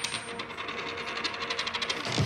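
A metal ring spinning and rattling on a wooden floor after being dropped, its clicks coming faster and faster as it wobbles down to rest.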